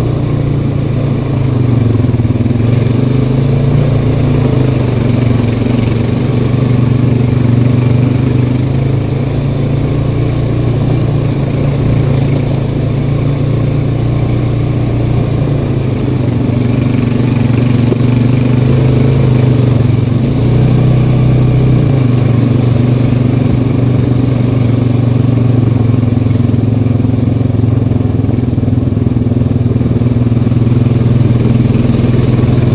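Honda Rancher 420 ATV's single-cylinder engine running under steady, moderate throttle while riding a dirt trail, its pitch rising and falling gently as the throttle changes.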